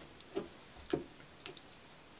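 Three soft, short taps about half a second apart from a hand handling a small paper card over a wooden table.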